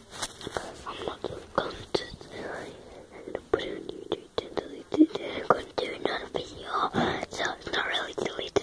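A child whispering close to the microphone, with many short clicks scattered through it.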